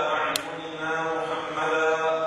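A man's voice delivering Arabic in a drawn-out, chanted way, each sound held on a steady pitch. A brief sharp click about a third of a second in.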